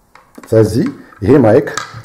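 A man speaking a few words, preceded by a few light clicks and taps from handling the phone and microphone.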